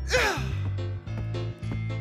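A cartoon hippo's voice giving a short, falling stretching sigh right at the start, over background music with a stepping bass line.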